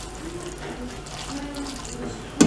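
Pasta and vegetables sizzling steadily in a stainless steel frying pan on a gas stove as they are stirred.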